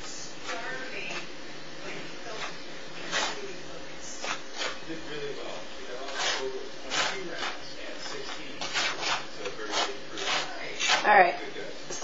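Fork scraping and clicking against a plate as it stirs flour, breadcrumbs and seasoning together: irregular short scrapes, coming more often near the end.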